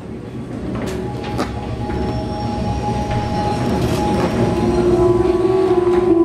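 A low rumbling that grows steadily louder, with a few sharp knocks, as held music notes come in and a strong sustained note enters near the end.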